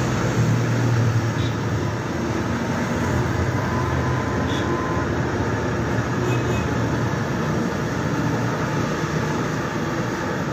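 Handheld gas torch burning steadily: a constant rushing noise with a low hum, as it heats plastic filler during a car bumper crack repair.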